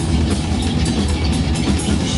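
Live hardcore punk band playing loud, distorted electric guitar and bass over a drum kit, heavy in the low end.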